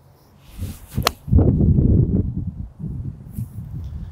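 A golf iron swishing down and striking a ball with one sharp click about a second in. This is followed by a couple of seconds of low rumbling noise.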